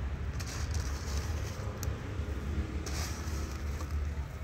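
Steady low outdoor rumble, with a few faint short rustles and scrapes.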